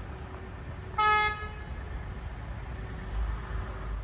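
A single short vehicle horn toot, one steady note lasting about half a second, about a second in, over a steady low outdoor rumble that swells near the end.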